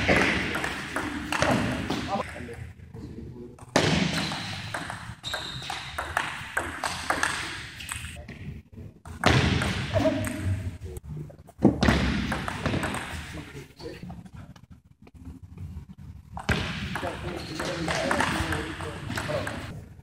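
Table tennis ball clicking back and forth between paddles and table in several rallies, each cut off by a short pause. The clicks echo in a large hall.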